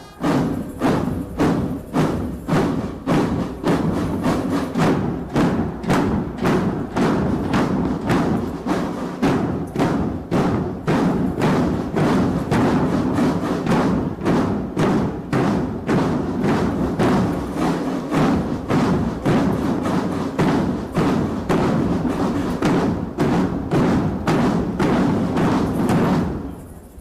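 Military marching drum band playing a fast, steady beat led by large bass drums, the strikes following one another evenly and without a break.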